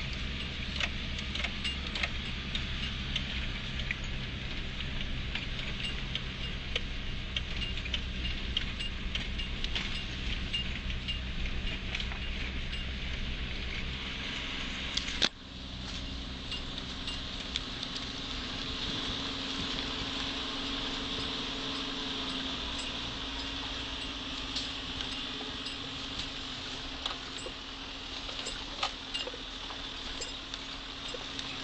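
Inside the cab of a 4WD driving a rough dirt trail: the engine runs steadily while loose gear rattles and clinks with the bumps. A sharp knock comes about halfway, after which the engine's low drone is weaker.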